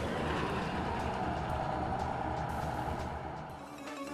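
City bus passing close by, its engine running, the sound fading as it moves away near the end.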